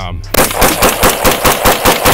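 Scoped AR-style rifle firing a rapid string of shots, about six a second, starting suddenly a third of a second in.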